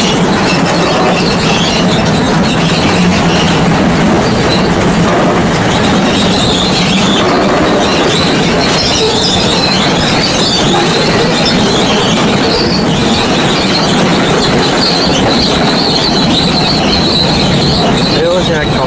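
Mountain-coaster carts running in a line along a curved metal rail track: a loud, steady rumble of wheels on the rail, with a high, wavering wheel squeal that becomes plain about a third of the way in.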